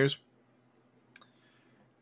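The end of a spoken word, then near silence broken by a single short, faint click about a second in.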